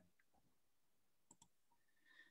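Near silence, broken by two faint, quick clicks about a second and a half in.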